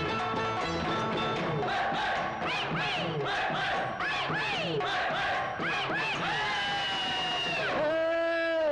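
Tamil folk-style film-song music with drums, over which a group of voices whoops and calls in short rising and falling glides, ending in a long held note near the end.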